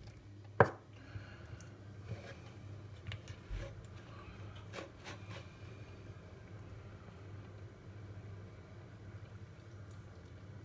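A metal fork clicking and scraping against a plastic ready-meal tray as curry and rice are scooped up. There is one sharp click about half a second in and a few fainter clicks a few seconds later.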